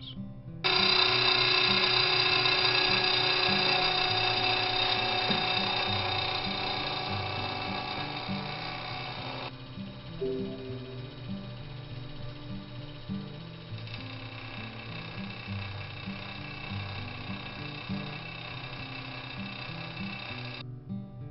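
A milling machine's gear cutter cutting teeth in a brass gear blank, taking trial cuts to find the full tooth depth. It makes a high metallic whine made of many steady ringing tones, which starts about a second in and drops away sharply about halfway through, continuing fainter. Background music with low stepped notes plays throughout.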